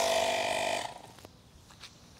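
12-volt portable tire inflator's compressor running with a steady, buzzing hum, then cutting off abruptly just under a second in, the tire having reached its set pressure of about 40 PSI. A few faint ticks follow.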